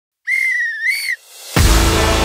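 A single whistle blast, just under a second long, that lifts in pitch at its end. A brief swell follows, and about one and a half seconds in, intro music with strong bass kicks in.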